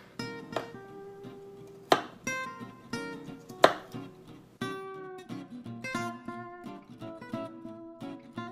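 Acoustic guitar background music with plucked notes throughout. Over it, a kitchen knife chops garlic on a cutting board, with two sharp knocks standing out about two seconds in and again a second and a half later.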